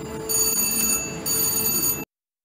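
VGT Crazy Cherry Jubilee slot machine ringing its win bell while the credit meter counts up a cherry-line win. The ringing comes in two bursts with a short dip about a second in.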